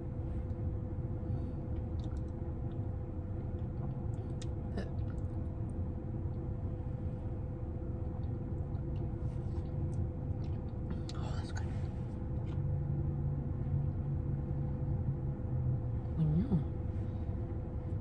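Someone eating soft frozen custard with a plastic spoon: small scattered clicks of the spoon and mouth, chewing, and a low closed-mouth hum about two-thirds through. Under it runs a steady low rumble inside a car.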